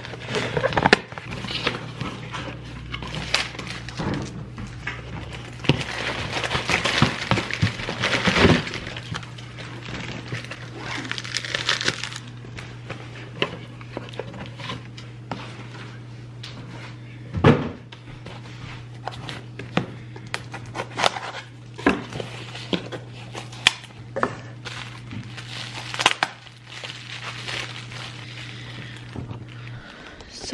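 A cardboard shipping box being opened and unpacked by hand: paper and cardboard rustling, with scattered knocks and taps as the box and its contents are handled. A steady low hum runs underneath and stops near the end.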